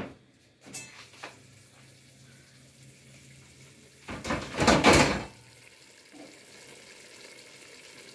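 Stainless steel cookware handled at a gas stove: one brief noisy scrape about four seconds in, lasting about a second, over a faint low hum.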